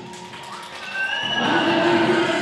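Music tailing off: the band's last chord has just stopped, then from about a second in a held high note, bending slightly, grows louder.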